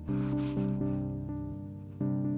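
Electronic music from hardware synthesizers: low notes held with several overtones, with short notes re-striking every quarter to half second over them.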